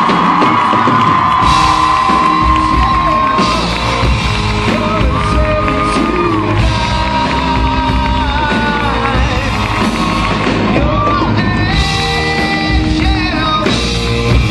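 Rock music with singing, played loud in a large hall, with audience yells and whoops over the first few seconds.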